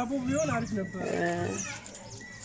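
Speech: a voice talking, with a short held sound near the middle. It drops away near the end.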